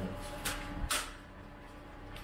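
Plastic ice cube tray being worked to free the ice: two short sharp cracks about half a second apart, near the start.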